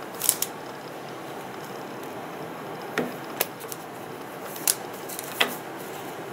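Rubber bands being stretched and snapped onto a rolled paper tube, with paper handling: a handful of short light snaps and rustles scattered over quiet room tone.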